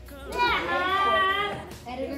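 A young child's high voice making one drawn-out, wavering vocal sound without words, about a second long, among other children's voices.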